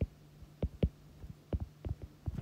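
A stylus tapping and scratching on a tablet screen while hand-writing letters and bond lines: about six short, unevenly spaced taps over a steady low hum.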